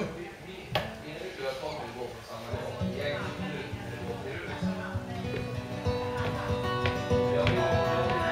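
Steel-string acoustic guitar: a few scattered plucks as the tuning is checked, then the song's intro starts about two and a half seconds in, ringing notes that grow louder near the end.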